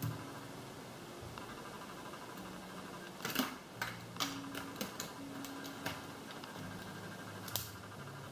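Small sharp plastic clicks and taps from handling a Puregon injection pen: the used pen needle is taken off and dropped into a plastic sharps container. The clicks cluster in the middle, with one more near the end, over a faint steady hum.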